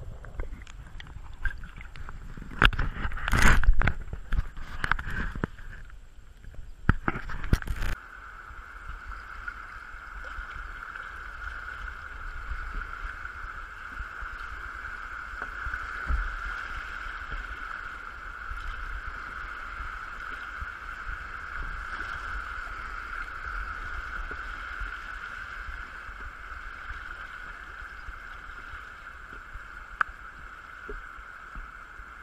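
Loud, irregular splashing and knocking of water for the first eight seconds or so. Then the sound switches abruptly to the steady rush of a shallow river rapid as a kayak runs through it.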